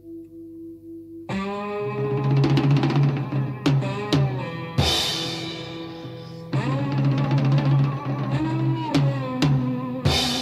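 Late-1960s blues-rock recording: a few quiet held notes, then about a second in the full band comes in loud with drum kit, cymbal crashes and bass under guitar chords.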